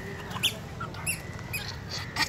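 Young puppies giving short, high-pitched squeaks and whimpers, a few brief calls that slide down in pitch, over a low background rumble.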